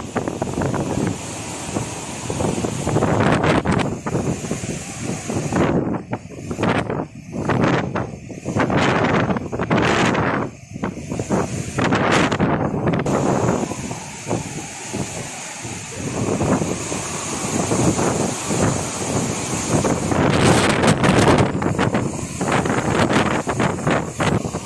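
Cyclone storm wind gusting hard against the microphone, rising and falling in surges, with rough sea surf underneath.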